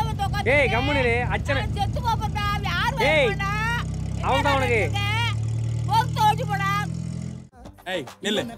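People calling out in long rising and falling exclamations over the steady low drone of an open-top car's engine. The engine drone cuts off suddenly about half a second before the end.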